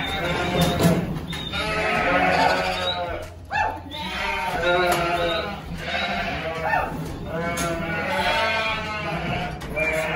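Sheep bleating over and over, one wavering call after another.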